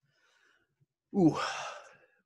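A man lets out a voiced sigh about a second in, an "ooh" that trails off into a breathy exhale.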